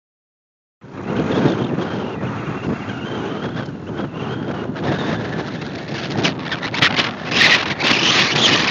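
Strong wind buffeting the microphone, a rough, gusting rush that starts about a second in and grows louder near the end.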